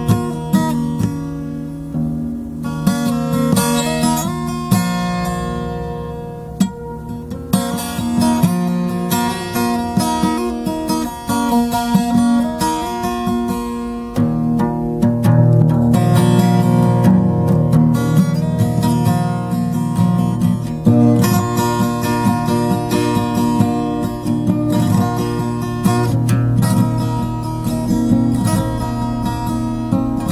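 Walden Natura D560 steel-string acoustic guitar in an open tuning, picked and strummed with ringing, sustained notes. The playing is sparser in the first half and becomes fuller and louder from about halfway.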